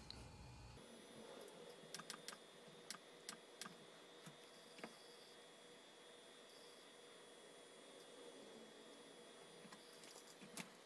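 Near silence with a few faint, short clicks between about two and five seconds in, from the laptop's keys or buttons being pressed to shut it down.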